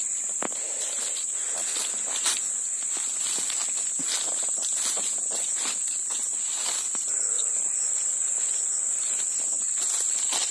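Footsteps crunching and rustling through dry brush and leaf litter at an irregular pace, one sharper crack a little over two seconds in. Under them runs a steady high-pitched insect buzz.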